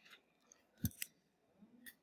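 Two quick, faint clicks close together about a second in, then a fainter click near the end, over near silence.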